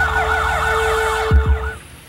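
Motorcade emergency-vehicle siren in a fast rising-and-falling yelp, over a low vehicle rumble. Two low thumps come shortly before the siren cuts off, about three-quarters of the way through.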